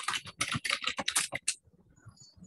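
Fast typing on a computer keyboard: a quick run of key clicks through the first second and a half, then only a few faint ticks.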